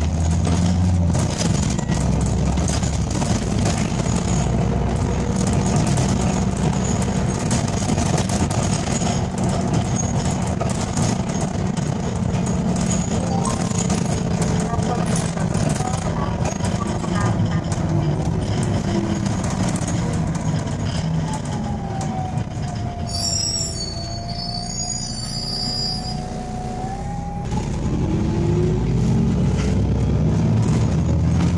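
Interior ride noise of an Irisbus Citelis CNG city bus: the engine and drivetrain run steadily under the noise of the moving bus. Past the middle the sound eases off with a whine that sinks and fades. Near the end a rising whine returns as the bus picks up speed.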